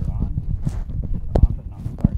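Irregular low thumps and rustling of an aviation headset being handled and adjusted on the head, with one sharp click about one and a half seconds in.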